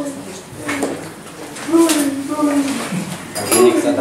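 Voices talking in a room, with a few short sharp clinks of dishes and cutlery.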